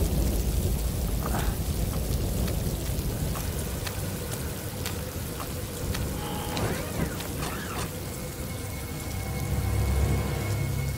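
Steady heavy rain pattering, with a low rumble of thunder that fades away over the first few seconds.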